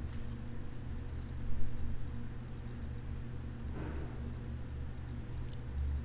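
A steady low electrical hum under the recording, with a faint soft rustle about four seconds in and a brief faint click near the end.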